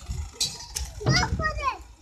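Children's voices calling out and chattering over a low rumble, with a couple of short clicks early on.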